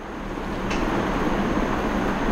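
A steady rushing background noise that swells during the first second and then holds level, with a faint high whine.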